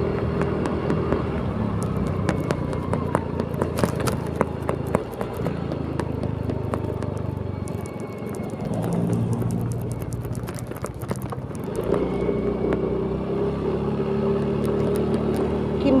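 Motor scooter engine running under way, with wind and road noise on the microphone. Its steady hum fades in the middle and comes back strongly near the end.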